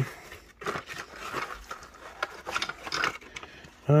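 Paper and cardboard rustling, with small irregular clicks and scrapes, as a small souvenir toy is drawn out of a paper box and handled.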